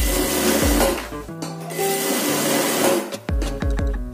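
Industrial sewing machine stitching a shirt seam in two short runs: one in the first second and another from about two to three seconds in, with a brief stop between. Background music plays underneath.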